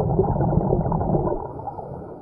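Muffled underwater rush of a scuba diver's exhaled breath bubbling from the regulator, easing off near the end.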